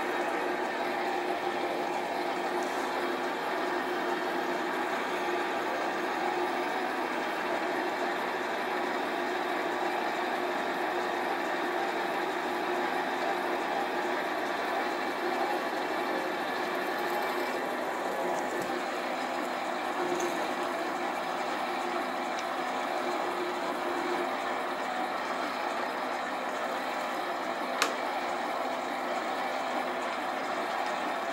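Small metal lathe running steadily at fairly low speed while a boring bar cuts the bore of a workpiece spinning in the chuck: an even machine hum with a steady whine. A single sharp click comes about two seconds before the end.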